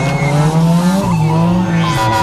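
Nissan Silvia S15 drift car's engine revving hard, its pitch climbing and dropping twice, with the tyres squealing as the car slides sideways.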